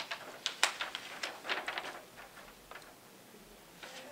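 Paper handouts rustling as sheets are lifted, turned and shuffled, giving a quick run of crisp rustles and clicks over the first two seconds that thins out to a few faint ones.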